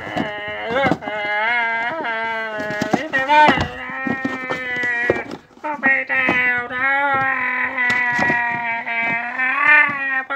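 A person's voice drawn out in long, quavering wordless wails, with a short break about halfway through.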